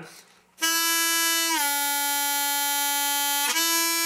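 Diatonic harmonica in A, hole 2 draw: a single held note starts about half a second in, bends down a whole step about a second in and holds there, then comes back at its natural, unbent pitch near the end.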